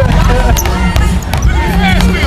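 Basketball being dribbled on an outdoor modular tile court, several bounces, amid the voices of children and adults around the court.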